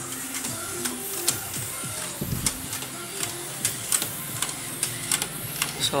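DTF (direct-to-film) printer running a print job: the print-head carriage and film feed working with a steady run of irregular clicks and ticks.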